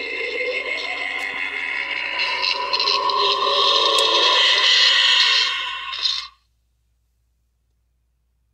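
Tekky Toys haunted-toaster Halloween prop playing a loud, harsh, noisy sound effect through its built-in speaker. The sound swells and then cuts off abruptly a little after six seconds in.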